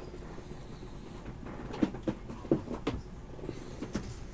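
A few short, light taps and clicks of trading cards being handled on a stack, mostly in the second half.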